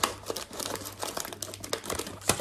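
Crinkly plastic chip packets rustling and crackling as scissors cut them apart from a multipack strip.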